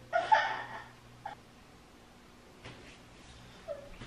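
A frightened toddler whimpering once, about a second long, at the start, followed by a couple of brief faint whimpers.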